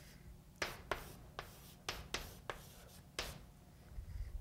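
Chalk writing on a blackboard: a series of short, sharp strokes and taps, about seven in three seconds, as the words are written out.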